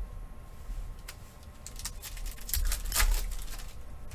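Trading cards and rigid plastic card holders being handled on a tabletop: a run of light clicks and taps, with a louder cluster about three seconds in.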